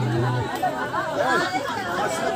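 Indistinct chatter of a group of people talking at once, their voices overlapping. A held musical chord cuts off about half a second in.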